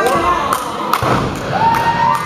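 A run of sharp thuds from wrestlers' bodies or feet striking the ring's canvas, the two loudest about half a second and one second in. A voice shouts near the end.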